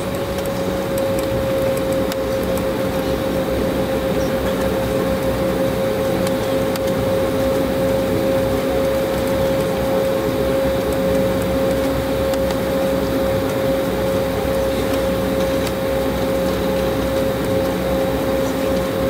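Cabin noise of a taxiing Embraer 190 airliner, heard from inside: a steady rumble of engines at idle and air-conditioning airflow, with a clear whine that dips slightly in pitch at the start and then holds steady.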